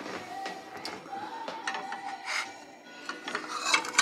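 Rubbing and scraping handling noise with scattered light clicks, busiest near the end as china plates are handled.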